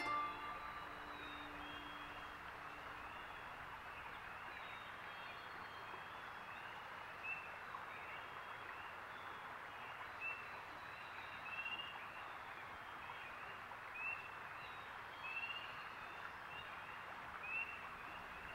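Faint outdoor ambience: a steady soft hiss with a series of short, high chirping calls repeating every second or two, several standing out louder. The last held note of a music piece dies away in the first few seconds.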